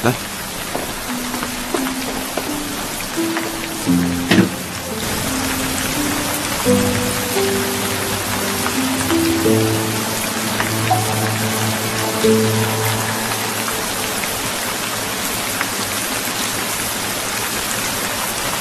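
Steady heavy rain falling, under a slow instrumental melody of long held notes.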